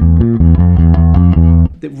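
Electric bass guitar playing a dark-sounding riff built around the blues scale's flat five, about four plucked notes a second. The riff stops abruptly near the end.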